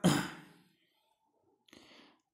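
A man's breathy exhale, fading out within about half a second, then near silence with a faint short breath near the end.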